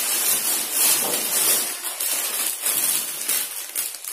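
Thin plastic carrier bag rustling unevenly as hands rummage in it and pull clothes out.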